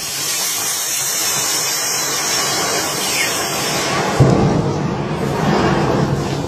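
Knife-punctured lithium-ion pouch battery failing in thermal runaway: a loud, steady hiss of gas spraying from the cell. About four seconds in, it catches fire and a deeper, louder rush of a flame jet joins the hiss.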